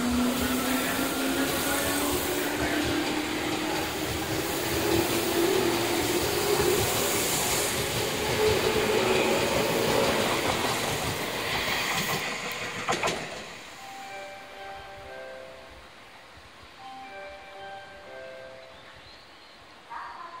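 Tobu 10000 series electric train accelerating away from a station: the traction motors' whine rises steadily in pitch over the rolling noise of wheels on rail. A sharp knock comes about 13 seconds in, then the sound drops away as the train clears.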